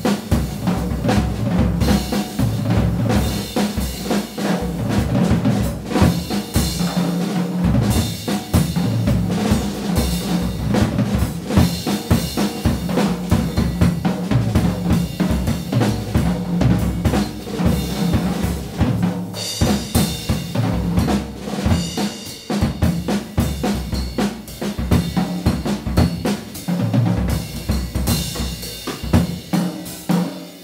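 Jazz drum kit solo played with sticks: a dense, fast stream of strokes on snare, toms and bass drum under cymbal wash.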